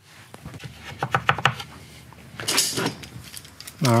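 Metal hand tools being handled on a wooden workbench: a steel rule and a pair of long locking pliers. A run of light clicks and clatters, with a louder metallic rattle about two and a half seconds in.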